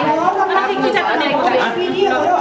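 Chatter of several people talking at once, their voices overlapping.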